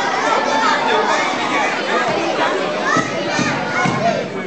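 Many children's voices chattering and calling out at once, a crowd of young kids, with some adult voices mixed in.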